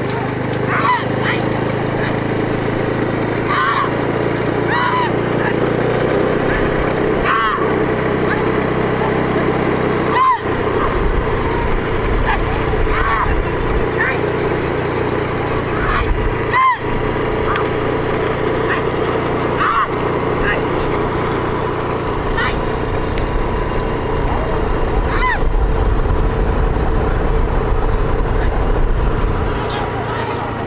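Bullock cart race at speed: a motor vehicle's engine runs steadily under the rattle of carts and hooves, while drivers and onlookers give repeated short shouts and calls to urge the bulls on.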